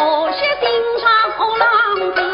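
Suzhou tanci singing: a woman's voice sings a slow, ornamented line with vibrato, accompanied by plucked pipa and sanxian.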